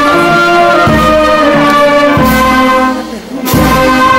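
Brass band playing, trumpets and trombones holding long notes in chords, with a short break about three seconds in before the next phrase starts.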